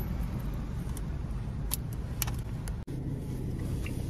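Low, steady rumble of a car idling, heard inside the cabin, with a few light clicks.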